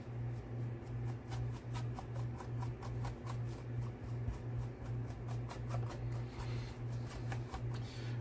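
Small bristle paintbrush scrubbing and dabbing across textured paper-mache scales, short scratchy strokes at about three to four a second, over a steady low hum.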